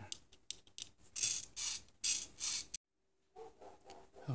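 Narrow steel file rasping back and forth over the wire-stripper blade of a Victorinox Swiss Army knife, about two short scraping strokes a second, grinding a knife edge onto the stripper so it will cut through wire insulation. The scraping cuts off suddenly near the end.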